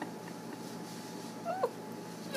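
A quick pair of short, high-pitched squeaky vocal sounds, falling in pitch, about a second and a half in, over a low steady room hum.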